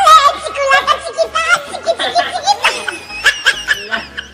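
Several people laughing loudly together in shrill, shaking bursts, loudest at first and tailing off toward the end.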